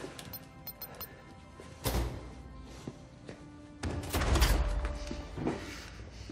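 Tense film score with heavy thuds: one sharp hit about two seconds in, then a louder, longer low boom about four seconds in and a smaller hit soon after.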